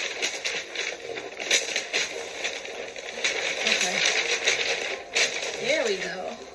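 Wrapping paper rustling and crinkling as it is unrolled and spread over a gift box, in irregular rustles.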